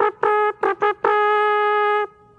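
A man imitating a trumpet with just his mouth, giving a high, brassy sound: several short staccato notes, then one long held note from about a second in.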